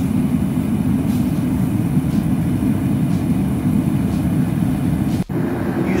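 Propane burner firing a small smelting furnace, running with a steady low rumble. It cuts out for an instant about five seconds in, then carries on.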